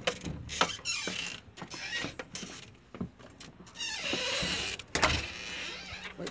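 A door being opened and let shut: creaking about a second in and again from about four to five seconds in, among scattered clicks and knocks.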